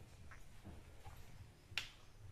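A single sharp click near the end, over faint background with a few much weaker ticks.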